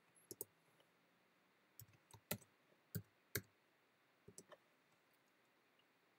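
Computer keyboard keys pressed one at a time, with about a dozen separate clicks coming in small clusters and pauses between them.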